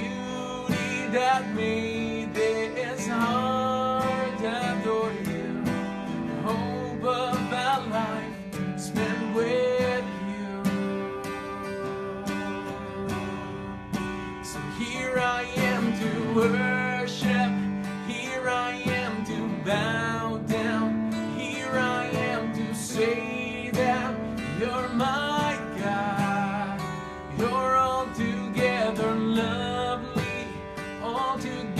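Acoustic guitar strumming the chords of a worship song, with a melody line above it.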